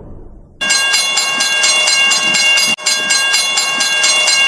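Logo-intro sound effect: a loud, dense clattering noise with several steady ringing tones held over it. It starts suddenly under a second in and breaks off briefly near the middle.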